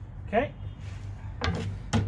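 A cut quarter-inch acrylic sheet handled against the glass tank: a short rising squeak, then two sharp knocks about half a second apart near the end, over a steady low hum.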